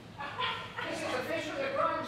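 A person's raised, high-pitched voice in a large reverberant hall, in several short phrases with brief pauses.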